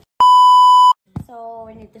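A single loud electronic bleep: one steady pitch held for just under a second, starting and stopping abruptly with dead silence on either side, as a tone edited into the soundtrack. A voice comes in about a second later.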